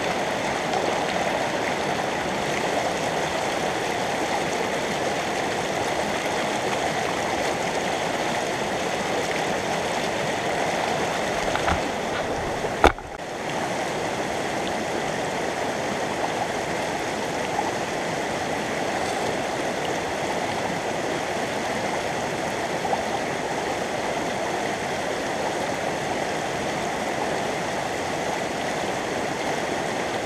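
Steady rushing of a shallow, rocky stream, its water running around the stones and through a sluice box set in the current. A single sharp knock stands out about thirteen seconds in.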